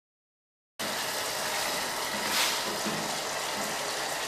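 Steady hiss of food cooking in a pot on a gas stove, starting after the sound cuts out completely for most of the first second.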